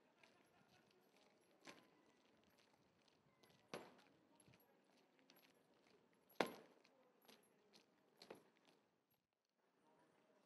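Near silence, broken by a few sharp, irregular footsteps of shoe heels on hard ground, the loudest about six and a half seconds in.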